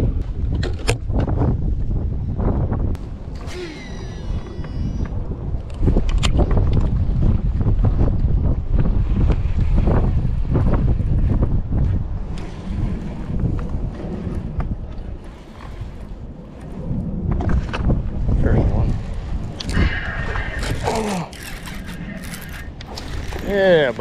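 Wind buffeting the microphone, a steady low rumble, with scattered clicks and knocks from fishing tackle being handled.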